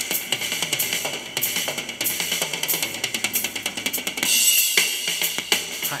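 Live drum solo on a full rock drum kit: rapid strokes across the drums with hi-hat and cymbals, and a loud cymbal wash about four seconds in.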